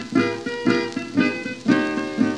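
Acoustic guitar played country-blues style in a 1934 recording: a short instrumental phrase of single plucked notes between sung lines, about two notes a second, each ringing and fading.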